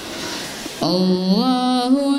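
A boy's solo voice chanting Qur'an recitation (qirat) in a melodic style. After a quieter pause, a long held note begins about a second in and steps up in pitch.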